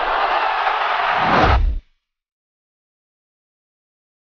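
A loud rushing noise with a deep rumble swelling at its start and again near its end, cutting off abruptly just under two seconds in, followed by silence.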